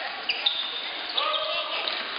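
Basketball bouncing on a hardwood gym floor, a few sharp knocks that echo in the hall, with voices of players and spectators and a short high squeak about half a second in.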